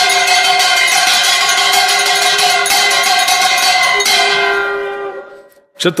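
A bell rung rapidly and continuously, stopping about four seconds in and ringing out, fading away over the next second and a half.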